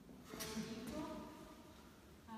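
A short scrape about a third of a second in, followed by a person's indistinct voice for about a second, then quieter room sound.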